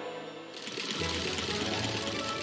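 A sewing machine running fast, starting about half a second in, over background music.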